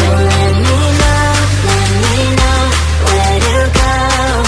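Pop music: a deep sustained bass, a melody line that holds and glides, and a regular beat.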